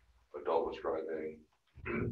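Indistinct talking: a phrase of about a second, then a shorter one near the end.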